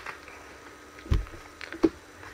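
Quiet handling of trading cards: a soft low thump about a second in and a short tap near the end.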